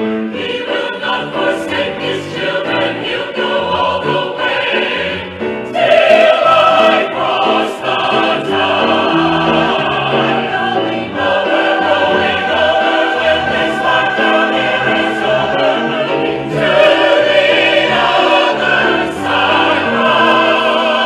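Mixed choir singing a Southern gospel song in full harmony with piano accompaniment, growing noticeably louder about six seconds in.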